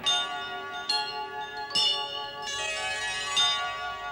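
Bell-like chime notes struck one after another, about four strikes, each ringing on and overlapping the last: a short musical sting.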